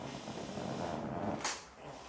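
A man groaning for about a second and a half under deep-tissue pressure on his tight lower back, ending in a brief sharp click.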